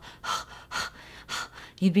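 A woman panting quickly in and out through her mouth, short breathy puffs with about three strong ones alternating with weaker ones: the breathing of someone who has lost her breath. Speech resumes near the end.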